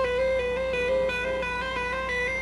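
Live hard rock band playing, with one high note held through, wavering slightly in pitch, and no drum hits.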